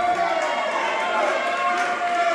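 Dance music from a DJ mix on a club sound system with the bass dropped out, leaving a long held note and higher parts. Crowd voices can be heard in the room.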